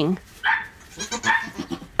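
Goat bleating: a few short, soft calls.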